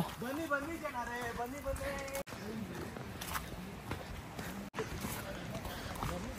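Faint voices of people talking some way off from the microphone, quiet and indistinct, broken by two abrupt cuts.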